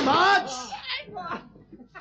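Men's voices shouting loudly at a high pitch, dying away after about half a second into quieter, scattered voice sounds.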